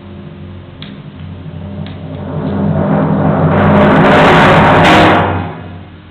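Timpani roll on one sustained low pitch, building steadily from soft to loud over about five seconds and then stopping abruptly.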